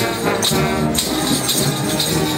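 Marching brass band playing a tune with timbrels (ribbon-decked tambourines) shaken and struck in time, their jingles landing about twice a second over the sustained brass chords.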